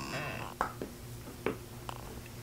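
Quiet mouth sounds of chewing and tasting chocolate: four short, soft clicks and smacks at uneven spacing over a faint steady room hum.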